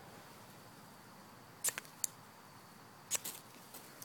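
Gerber flint-and-steel fire starter scraped along its rod in two quick strikes about a second and a half apart, each a brief pair of rasps. The first strike fails; the second throws sparks that light wax-soaked jute tinder.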